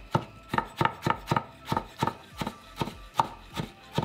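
Chef's knife dicing peeled tomato on a plastic cutting board, the blade striking the board in a steady rhythm of about three cuts a second.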